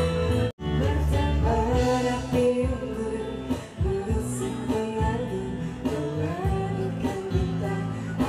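Live acoustic band playing a slow pop song: strummed acoustic guitars and bass guitar under a woman's and a man's sung vocals. The sound cuts out for an instant about half a second in.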